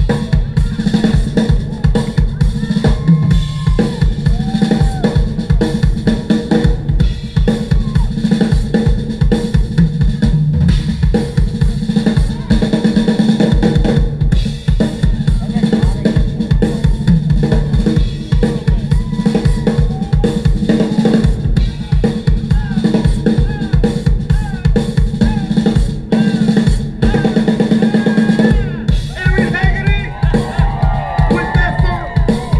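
Live funk band playing an instrumental vamp through a concert PA: a drum kit drives it with busy kick and snare strokes, over a bass line and bending guitar lines.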